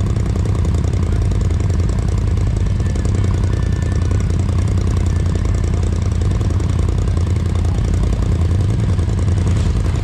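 Side-by-side UTV engine idling steadily, a low, even running sound with no revving.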